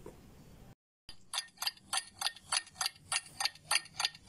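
Clock ticking as a time-passing sound effect: sharp, evenly spaced ticks, about four to five a second. It starts after a brief dead-silent gap about a second in.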